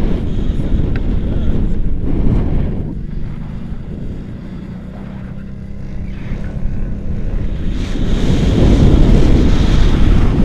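Wind rushing over an action camera's microphone on a paraglider in flight, a steady low rumble that eases off in the middle and grows louder about eight seconds in.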